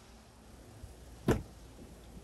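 Sliding side door of a Mercedes-Benz Sprinter van unlatching: one sharp click a little over a second in as the handle is pulled and the door releases.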